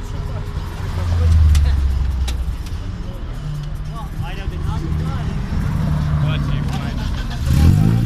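Car engines at a drag strip: a deep engine drone swells about a second in and fades, engines hum steadily, and an engine revs up sharply near the end, over crowd chatter.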